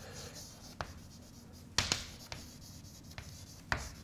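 Chalk writing on a blackboard: faint scraping with a handful of short, sharp taps as the letters are struck.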